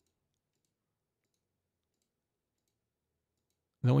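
Near silence, a gap in the narration with only the faintest specks of sound, until a man's voice begins speaking near the end.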